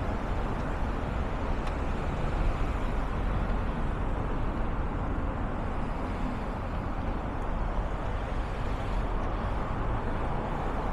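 Steady traffic noise from cars driving along a city street.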